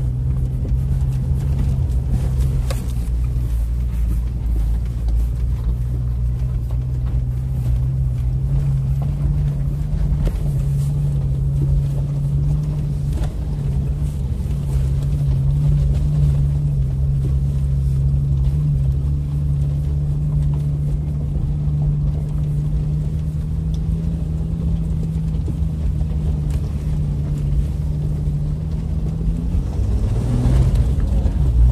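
Jeep engine running at steady, even revs, heard from inside the cabin as it drives over a rough, stony dirt track: a constant low drone with a few faint knocks.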